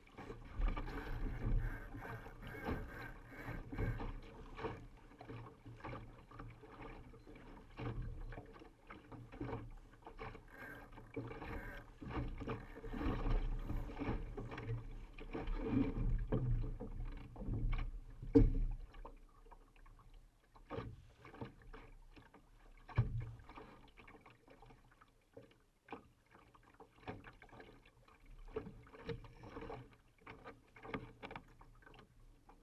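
Water rushing and splashing along a Laser sailing dinghy's hull, with a low rumble of wind buffeting and scattered short knocks and clicks from the boat. The rushing is louder for most of the first two-thirds; after that it quietens and the sharp clicks stand out more.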